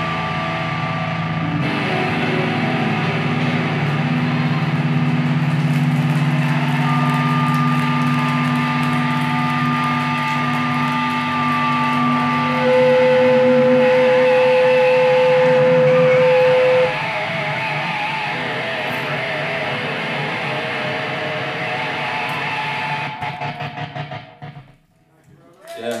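Electric guitar played through a loud amplifier, letting long notes and chords ring on at the close of a rock song, with no drums. A loud, steady held tone sounds for about four seconds in the middle, followed by warbling notes, and the sound dies away shortly before the end.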